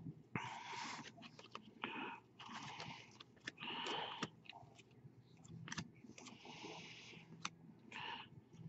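Baseball trading cards being slid and flicked through by hand: faint, short scraping rustles with small sharp clicks between them.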